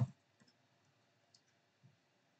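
A few faint clicks from a computer keyboard and mouse as Backspace and the mouse buttons are pressed, spaced out with quiet between them.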